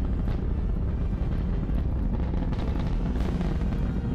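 Rocket engine rumble, a continuous deep roar with a few brief crackles, of the kind heard from a heavy-lift rocket climbing out.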